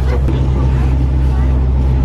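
Steady low drone of a harbour ferry's engine, with faint voices of people on board over it.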